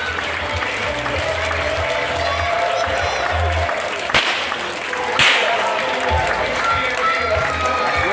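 Two sharp whip cracks about a second apart, the second louder, over background music.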